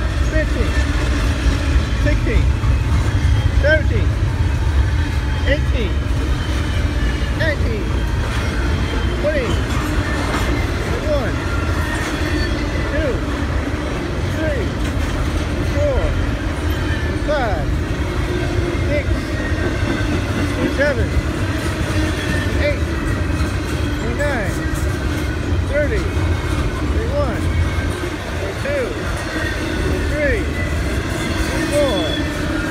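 Norfolk Southern double-stack intermodal freight train rolling steadily past: a constant low rumble of steel wheels on rail, with short high squeaks recurring every second or two.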